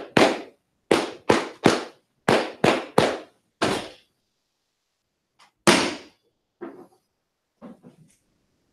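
A roomful of Masonic brethren clapping in unison in sets of three, the grand honors, with one more clap about four seconds in. A single sharp knock follows near six seconds in, then a few faint knocks.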